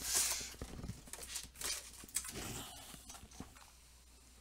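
Plastic wrapping crinkling and cardboard card boxes being handled. The loudest part is a burst of crinkling at the start, followed by scattered rustles and light knocks that die down toward the end.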